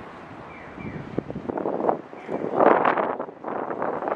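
Outdoor street noise with wind gusting on the microphone, swelling loudest a little before three seconds in, with a few faint short squeaks.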